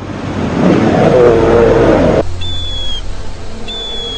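A large animal's loud, rough roar lasts about two seconds and cuts off abruptly. It is followed by two high, thin bird cries, each about half a second long, over a low steady hum.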